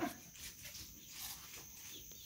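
Faint background ambience with a thin, steady high-pitched tone underneath. A voice trails off at the very start.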